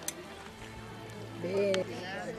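A person's voice holds one short sung note about one and a half seconds in, the loudest sound here. A sharp click comes near the start, over a faint low hum.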